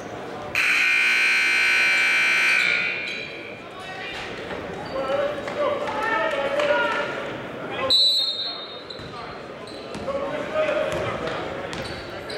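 Gymnasium scoreboard buzzer sounding one long, steady, loud blast of about two seconds, starting about half a second in. Afterwards a basketball is dribbled on the hardwood court and players shout, echoing in a large gym.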